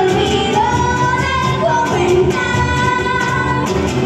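Live amplified acoustic pop song: voices singing into microphones over acoustic guitar and cajón.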